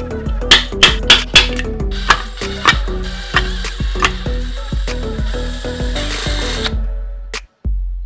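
Background music with a steady beat and bass line. From about two seconds in, a power drill runs over it, boring into the metal lid of a tin can, and stops suddenly near the end.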